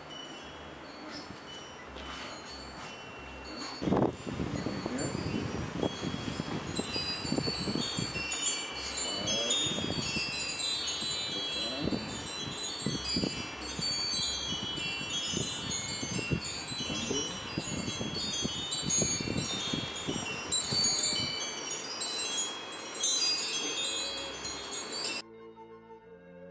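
Wind chimes tinkling, a continual scatter of short high ringing notes that grows louder and busier about four seconds in, then cuts off suddenly near the end.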